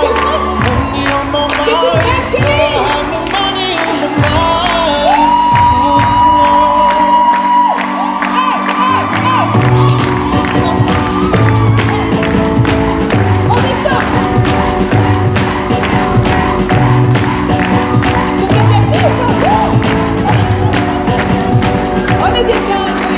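Loud music with a steady beat and vocals, with one long held note about five seconds in and a pulsing bass line from about halfway. A crowd cheers over it.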